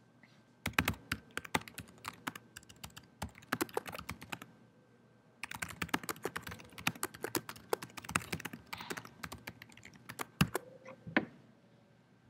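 Typing on a laptop keyboard: a run of quick keystrokes, a pause of about a second, then a second run, and a few last keys near the end.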